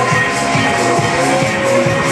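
Disco-style electronic dance music played loud over a club sound system, with a pulsing synth bass line at about four beats a second.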